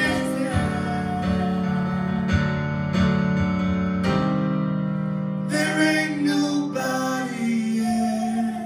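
Live piano-and-vocal music: held piano chords struck about once a second, with a singing voice coming in during the second half.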